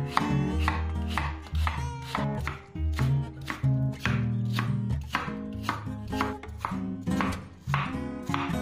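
Chef's knife cutting a peeled apple on a wooden cutting board: repeated sharp knocks of the blade through the fruit onto the board, about two to three a second, over acoustic guitar background music.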